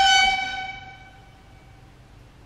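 A single held high note, steady in pitch with a stack of overtones, fading away over about a second and a half.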